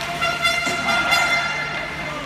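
A horn with a steady pitch, held for about a second, over a background of voices.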